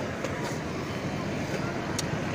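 Steady low outdoor street background noise with a faint low hum.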